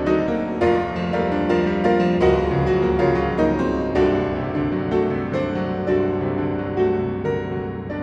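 Solo piano music: notes struck several times a second over sustained chords.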